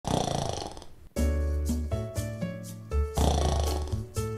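A loud rasping snore lasting about a second, then music with sustained bass and chord notes. A second snore-like rasp breaks in near the three-second mark.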